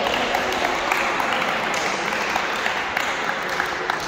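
Scattered hand claps and slaps, many short sharp claps at irregular intervals, in an indoor sports hall.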